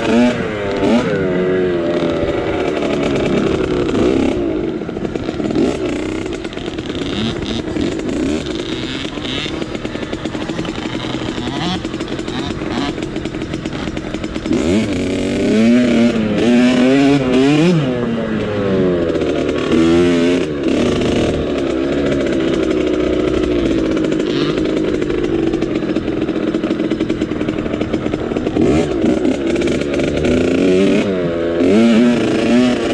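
Kawasaki dirt bike's engine running at speed under the rider, its revs climbing and dropping again and again as it accelerates and eases off.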